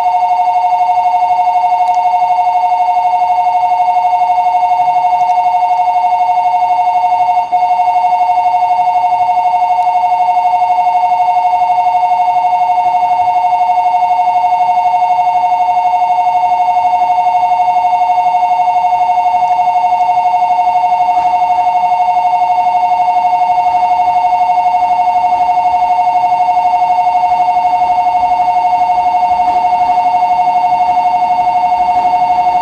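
A station platform's electronic train-approach warning ringing continuously as a steady two-tone bell-like ring from a platform loudspeaker while a train pulls in.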